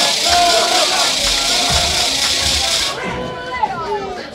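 Music playing over a hall's speakers with a hissy, shaker-like high end, mixed with crowd noise and voices; the music cuts off suddenly about three seconds in.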